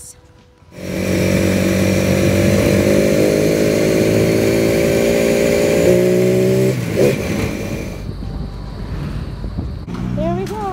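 A vehicle's engine running steadily, heard from on board while riding. It starts suddenly about a second in, rises a little in pitch around six seconds, and there is a knock about seven seconds in. It gives way to a quieter rumble of traffic near the end.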